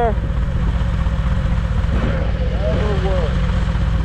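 Motorcycle engines idling at a standstill: the camera bike's Harley-Davidson Fat Boy V-twin with a Screamin' Eagle Stage IV 117 kit runs steadily at low pitch, with the BMW S 1000 idling alongside.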